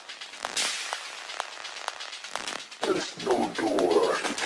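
Sparse passage of a minimal techno track: short clicks about two a second on a steady beat, a burst of hiss about half a second in, and a grainy mid-range sound swelling near the end.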